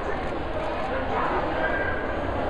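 Indistinct chatter of many voices echoing in a large gymnasium, over a steady low hum.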